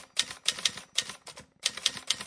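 Typewriter-style keystroke sound effect: an uneven run of sharp key clicks, about four or five a second.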